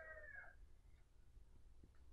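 Near silence: faint room tone with a low hum, as the tail of a spoken word fades out in the first half second.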